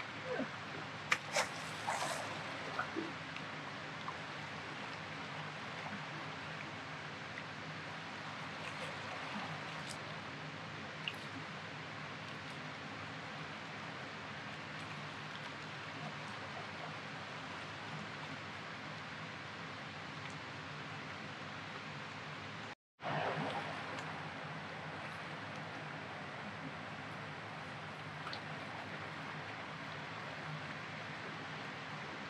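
Fast river current rushing past a rocky bank, a steady noise throughout. A few sharp clicks come in the first two seconds, and the sound cuts out for a moment about 23 seconds in.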